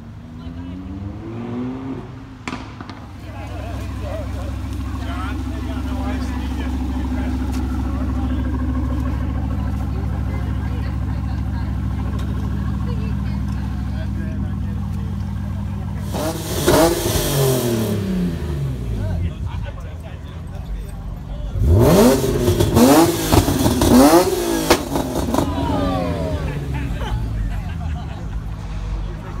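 A sports car's engine running with a steady low rumble, then revved hard in two bursts of quick blips, the pitch climbing and falling sharply, the second burst the loudest.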